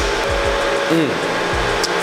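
A steady whirring background noise in a brewery fermentation hall, with a man's appreciative "mmm" as he tastes a beer about a second in.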